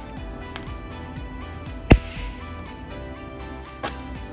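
Capacitor-discharge stud welder firing a 10-32 stud onto polished sheet metal: one sharp, loud crack a little before halfway, with a smaller click near the end. Background music plays throughout.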